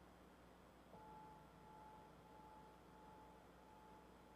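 Near silence: faint room tone, with a soft, steady ringing tone that comes in about a second in and holds.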